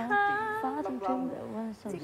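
A woman singing a Thai song unaccompanied, practising it, with held notes that slide from one pitch to the next and a brief break near the end.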